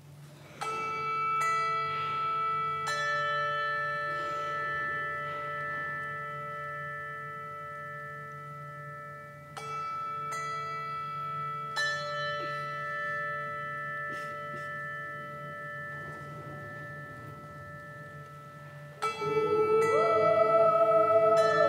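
Handbells struck in two phrases of three strokes each, several seconds apart, with each chord left to ring and slowly fade. A choir begins singing just before the end.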